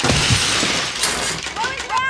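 A large Lego Death Star model hits the floor and breaks apart: a sudden thud and a loud clatter of plastic bricks scattering, with a second burst of clatter about a second in. A startled vocal cry follows near the end.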